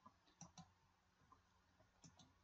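Near silence with two faint computer mouse clicks in quick succession about half a second in.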